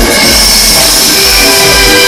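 Loud music played through a car audio system's speakers. In this stretch it is mostly bright, held synth tones with the beat dropping back, before the rhythmic section returns just after.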